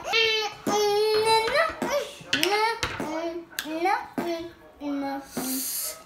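A young woman's high voice making drawn-out, wordless cries, from the burn of very spicy instant noodles. A short hiss of breath comes near the end.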